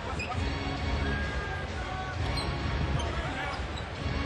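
Basketball arena sound during live play: a steady crowd murmur with the ball being dribbled on the hardwood floor and faint arena music underneath.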